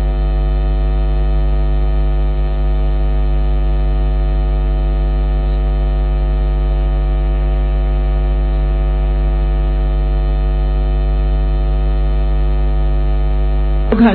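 Loud, steady electrical mains hum: an unchanging buzz with a stack of many overtones.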